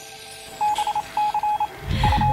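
Rapid short electronic beeps, a computer-style text-typing sound effect, in two quick runs of several beeps each starting about half a second in.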